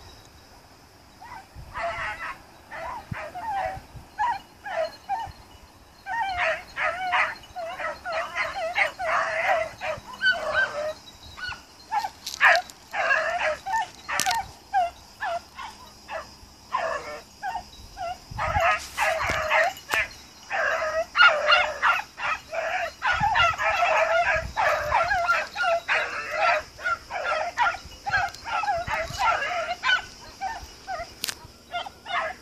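A pack of beagle hounds baying and yelping in quick, overlapping calls while running a hare on its scent trail, starting about a second and a half in, with short lulls partway through.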